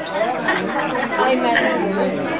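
Several people talking at once around a dining table: overlapping conversational chatter.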